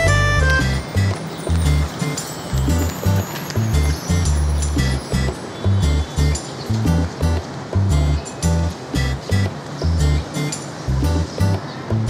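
Background music with a heavy, steady bass beat and ticking percussion on top, about two beats a second.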